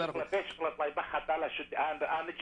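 Speech only: a caller talking over a telephone line, the voice thin and muffled by the narrow phone band.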